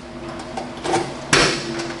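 Key working in the trunk lock of a 1967 Chevrolet Camaro: a few small metallic clicks, then one sharp, loud clack about a second and a half in as the trunk latch releases.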